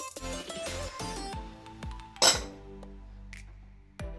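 Background music plays throughout. About two seconds in there is a single sharp, ringing clink, a glass container knocking against the metal brew kettle as table sugar is poured into the boil.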